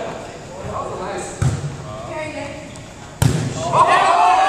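Two sharp volleyball smacks about two seconds apart, the second louder, echoing around a large gymnasium, with players' voices in the background.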